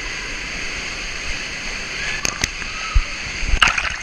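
Water rushing steadily as a rider slides down an enclosed water slide. In the last two seconds come several sharp knocks and splashes, the loudest just before the end.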